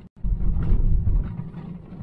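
Road and engine rumble inside a car's cabin as it drives over a bumpy desert dirt track, dropping out for an instant at the very start.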